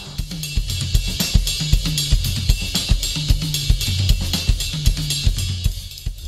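Drum kit playing a steady beat, with kick and snare strokes under a constant cymbal wash, over a bass line.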